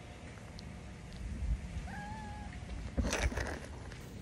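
A kitten mewing once, a short faint call about two seconds in, followed about a second later by a brief burst of rustling noise.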